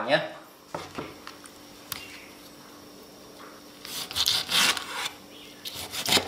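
Kitchen handling on a wooden cutting board while setting up to slice deboned chicken feet: a couple of light knocks, then a short burst of scraping and rubbing about four seconds in.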